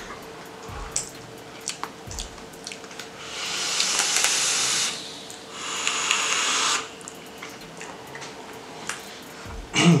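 Vaping on rebuildable dripping atomizers: two long breathy hisses of vapour being drawn and blown out, each one to two seconds long, with a few small clicks before them.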